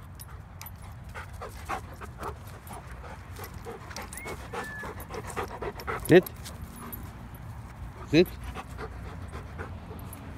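A black goldendoodle panting quickly and close by, in a steady run of short breaths.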